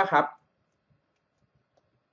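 A man's voice ends a word, then near silence with a few faint clicks of a stylus writing on a pen tablet.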